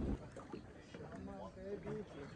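Faint voices of people talking on a boat, over low wind and water noise, with a brief low thump at the very start.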